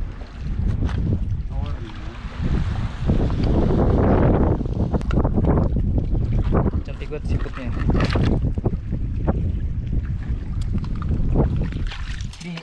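Wind noise rumbling on the microphone, with scattered knocks and splashes of footsteps over coral rock and through shallow water on a reef flat at low tide.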